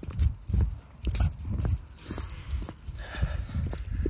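Footsteps of a person walking on a tarmac road, about two steps a second, picked up by a handheld phone.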